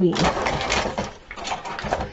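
Crinkling rustle of a plastic shopping bag being handled. It is densest in the first second, then breaks into scattered crackles that stop near the end.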